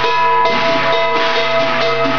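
Percussion music with drums and metallic strikes, a fresh loud strike about half a second in and another near the end, over a sustained ringing tone.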